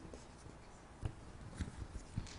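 Faint rustling and handling of papers on a table, with a few soft clicks and a sharper knock about a second in.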